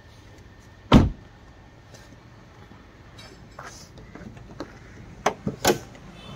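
A car door shut with one solid thump about a second in, followed near the end by a couple of sharp clicks.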